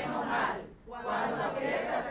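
A group of people reading aloud together in unison in Spanish, many voices overlapping, with a brief pause a little under a second in.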